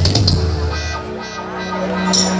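Live regional Mexican banda music played on a stadium stage, with sousaphone, saxophone and guitars, heard from within the crowd. About a second in, a low note is held steadily.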